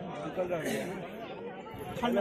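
Only speech: quiet, overlapping chatter of several people talking in the background.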